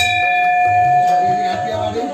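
Large hanging brass temple bell, just struck by hand, ringing with a clear tone that fades away over about a second and a half.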